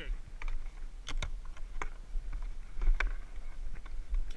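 Scattered sharp clicks and knocks over a steady low rumble: handling noise from a worn GoPro being jostled during a rope tug-of-war.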